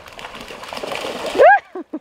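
A small terrier splashing as it wades and bounds through shallow river water, growing louder through the first second and a half. At about one and a half seconds comes one loud, short, high-pitched cry, then the first bursts of a person's laughter.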